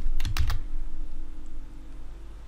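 Computer keyboard keys pressed for a shortcut (Shift+Z): a quick run of three or four clicks in the first half second, then a low steady hum.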